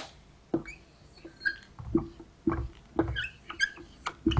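Felt-tip marker writing on a whiteboard: a series of short squeaky strokes as a number and a word are written.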